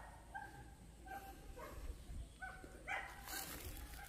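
A few faint, short animal calls, spaced about half a second to a second apart, from a distant animal, over a low steady rumble.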